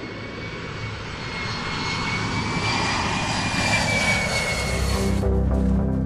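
Jet airplane flyover sound effect: engine noise with a thin high whine, growing louder and cutting off suddenly about five seconds in, when music starts.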